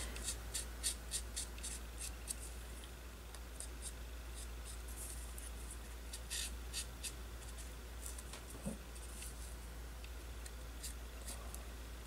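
Faint short, irregular strokes of a chisel-tip Sharpie permanent marker rubbing along the cut edge of a paper cutout.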